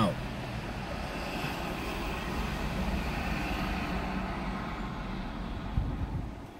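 Steady vehicle engine and traffic noise heard from inside a parked vehicle's cabin, swelling slightly in the middle and easing near the end.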